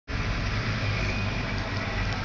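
Steady background noise of street traffic: an even rumble and hiss with no distinct events.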